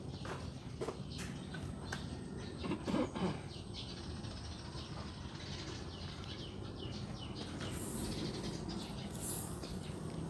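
Faint, scattered bird chirps over low background noise.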